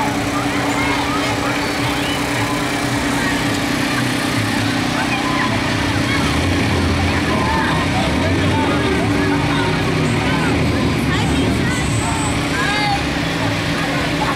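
Pickup truck engines running as trucks and trailers of riders pass, under many overlapping voices chattering and calling.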